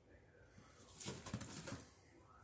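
A short spell of light rustling and small clicks, starting about a second in and lasting under a second, from small items and their packaging being handled.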